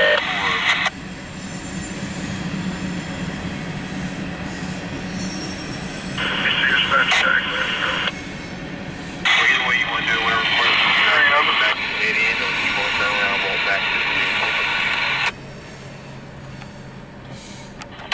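Railroad radio scanner chatter: tinny, narrow-band voice transmissions that cut in and out abruptly, one brief one at the start, one about six seconds in and a longer one from about nine to fifteen seconds. A low steady rumble runs underneath.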